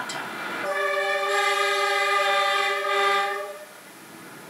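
Train locomotive horn giving one long steady blast of about three seconds, starting under a second in and stopping shortly before the end.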